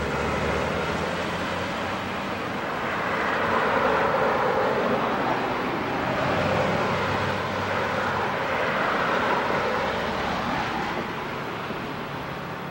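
Rumbling vehicle noise with a steady low hum and a rushing swell that builds from about two seconds in and eases off near the end.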